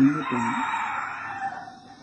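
A rooster crowing once in the background, one long call of about a second and a half that drops in pitch at its end.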